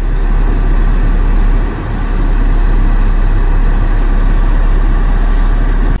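Loud, steady rumble and rush of a car in motion, heard from inside the car, with a short dip about two seconds in.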